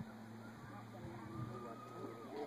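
Faint background voices over a steady low hum, with a brief thin high tone just after a second in.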